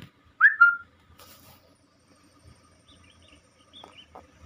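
A short, high whistle about half a second in: a quick upward glide that settles into a held note, over in about half a second. Faint low rumble and a few small chirps follow.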